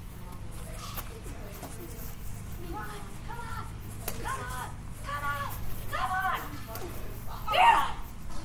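Children's voices calling out during a badminton rally, a string of short high-pitched calls in the middle and a loud yell near the end. A sharp tap of a racket hitting the shuttlecock comes about a second in.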